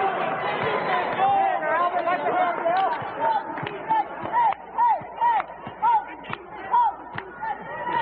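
Basketball game sound: an arena crowd murmurs and cheers steadily while sneakers squeak on the court floor. From about halfway in there is a quick series of short, chirping squeaks, along with a few sharp knocks of the ball bouncing.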